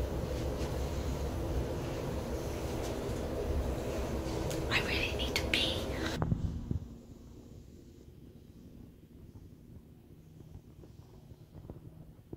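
Steady hum inside a moving lift car, with a woman whispering briefly about five seconds in. About six seconds in it cuts to a much fainter, quieter background.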